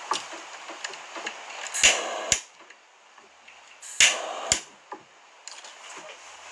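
Disposable lighter lit twice, about two seconds apart: each time a sharp click, about half a second of hiss, and a second click as it is let go. It is being passed over the head of a freshly tied fly.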